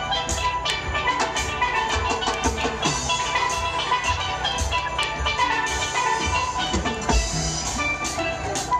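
A full steel orchestra playing live: many steel pans ringing out a busy melody and chords together, with percussion striking a steady beat underneath.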